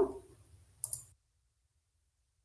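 A single short click about a second in, from a computer mouse during the software demonstration; otherwise silence.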